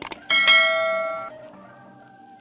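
Subscribe-animation sound effect: two quick clicks, then a bright bell chime that rings out and fades over about a second. Faint music tones follow near the end.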